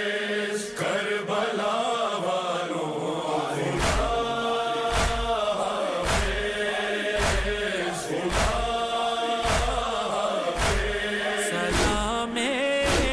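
A noha, an Urdu mourning lament, chanted in long held lines. From about four seconds in a heavy thump lands roughly once a second under the chant, the steady beat of matam.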